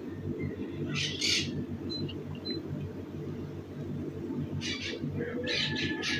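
Faint bird squawks and chirps in a few short bursts over low background noise.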